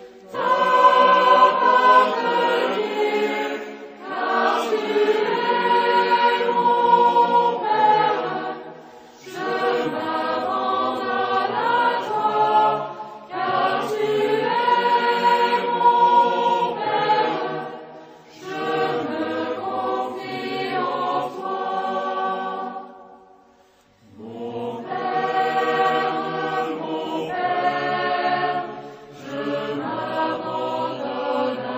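Choir singing a Catholic hymn of praise in sustained phrases of about four to five seconds, with short breaths between them and a longer pause a little before the end.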